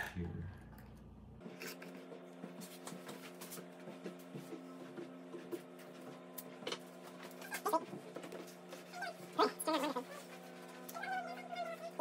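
A dog whining, a series of short wavering whines in the second half, then a longer one near the end.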